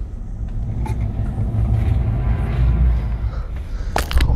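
A deep, steady rumbling drone from a horror film's sound design, with a few faint clicks over it.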